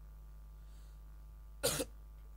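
A single short cough close to the microphone, about one and a half seconds in, over a faint steady hum from the sound system.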